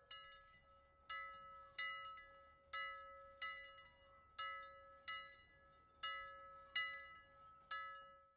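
Soft bell-like chime tones struck one at a time, about ten strikes in all, each ringing out and fading before the next, over a steady held hum.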